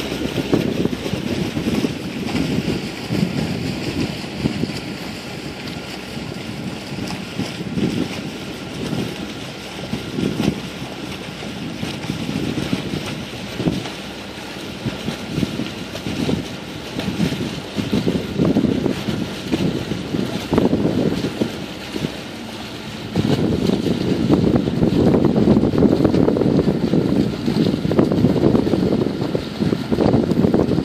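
Wind buffeting the microphone on a sailboat's open deck, in uneven gusts, over the steady wash of the sea. The wind noise grows louder in the last quarter.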